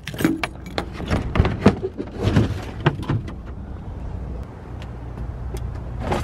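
Keys on a keyring jangling and clicking in the lock of a Thule roof cargo box as it is unlocked and opened: a quick run of small clicks and knocks with a short rustle about two seconds in. A steady low rumble runs underneath, and the handling sounds die away after about three seconds.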